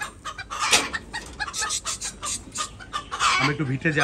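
Chickens clucking in a pen in a run of short, sharp clucks, with a longer, wavering call from a bird starting near the end.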